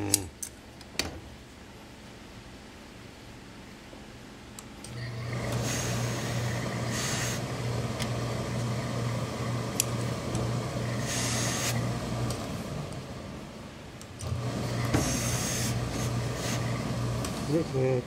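Tailor's hose-fed steam iron in use on suit fabric: a steady low hum runs in two stretches, stopping for a moment partway through, with three bursts of hissing steam over it.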